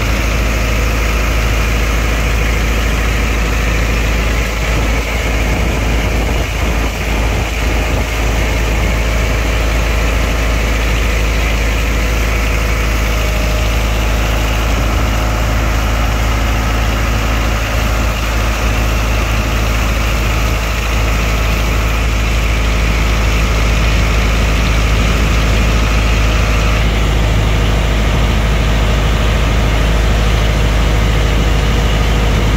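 A boat's engine running steadily with a deep rumble, growing a little louder in the last few seconds.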